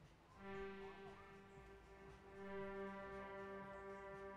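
Ableton's Bright Filterless Sweep Pad synth preset holding one faint, sustained note rich in overtones, starting about half a second in.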